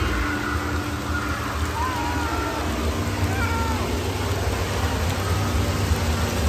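Indoor water park din: a steady low rush of spraying and splashing water, with a few short, high, wavering cries from young children about two seconds and three and a half seconds in.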